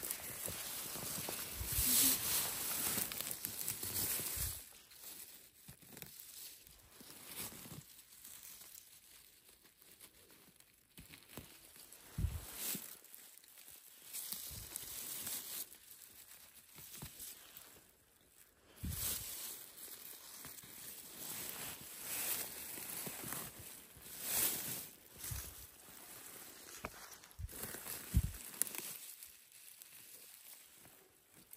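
Grass and dry leaf litter rustling and crinkling in uneven bursts as yellow mushrooms are pulled up by a gloved hand, with a few soft low thumps.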